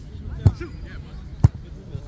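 Soccer ball struck twice, two sharp thumps about a second apart, as players kick or head it in play. Players' voices call out in the background.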